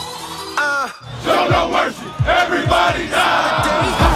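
A group of men shouting and yelling together over a music track. About half a second in, the music falls away in a downward pitch sweep; then the shouting voices come in with deep bass beats under them.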